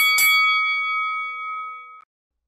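Bell-like chime sound effect on an animated title card: struck a few times in quick succession, then one ringing tone that fades slowly and cuts off abruptly at the end.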